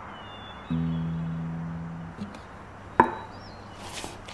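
An acoustic guitar note is plucked once and left to ring, fading over about a second and a half. About three seconds in comes a single sharp knock.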